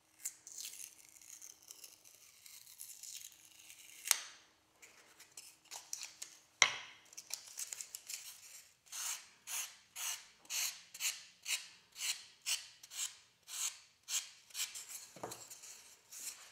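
Foam pattern being sanded by hand on an abrasive sheet: scratchy rubbing with two sharp clicks, then a run of about a dozen even back-and-forth rasping strokes, about two a second, through the second half.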